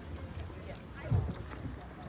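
Outdoor low rumble on the microphone with a louder thump about a second in, and faint distant voices.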